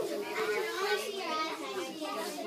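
Children's voices chattering in the background, several talking at once.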